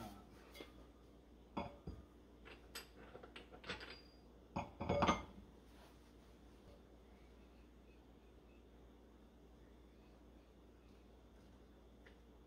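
Metal parts of a HydroVac brake booster clinking and knocking as a round metal plate is handled and set onto the assembly in a bench vise: a scatter of light strikes, the loudest cluster about five seconds in.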